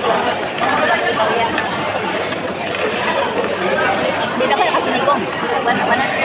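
Several people talking over one another, a steady chatter of voices with crowd babble behind it in a busy dining hall.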